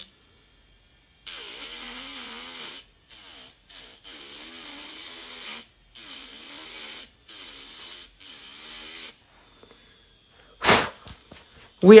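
Electric nail drill with a sanding disc bit filing an acrylic nail in a series of short passes, the grinding hiss starting and stopping every second or two. A short knock comes near the end.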